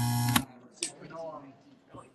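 A loud, steady electronic buzz with a tune-like sound over it cuts off abruptly about half a second in. Faint, broken voices remain in the video-call audio.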